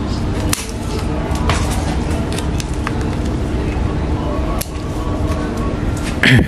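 Scissors snipping through thin woody shoots of a Sancang bonsai: a few sharp clicks, the clearest about half a second in and again near the end, over a steady background hiss and low hum.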